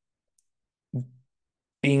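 A pause in speech: dead silence broken by a tiny click, a short low vocal hum about a second in, and a man's voice resuming near the end.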